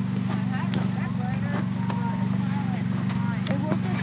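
Car engine idling steadily under the open hood, an even low hum. The car has been smoking and a hose is spitting fluid, which they take for power steering fluid.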